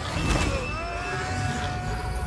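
Sci-fi film sound effects for glowing energy tentacles: a deep steady rumble with a sharp crack about a third of a second in, then a sustained high whine.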